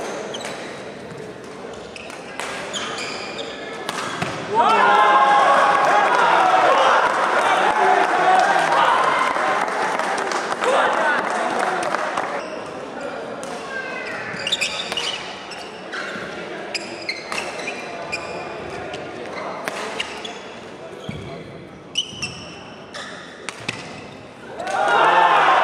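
Badminton play on an indoor court: sharp racket strikes on the shuttlecock and short squeaks of shoes on the court floor. A loud stretch of overlapping shouting voices comes in suddenly about four seconds in and dies down after about twelve seconds.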